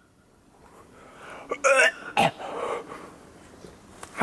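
A man making short wordless vocal noises as a comedy gag: a pitched cry about a second and a half in, then a sharp cry falling in pitch, followed by a breathy noise.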